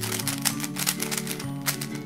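Plastic layers of a Dayan Megaminx twisty puzzle clicking in quick succession as its faces are turned by hand, over background music with steady held notes.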